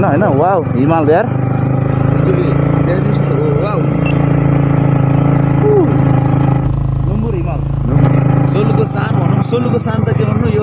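Yamaha MT-15's single-cylinder engine running at a steady speed under way on a rough dirt road. A low rumble comes in for about a second around the seven-second mark, and a few sharp clicks sound near the end.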